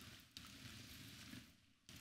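Near silence: faint room hiss with a small click, cutting out completely for a moment near the end.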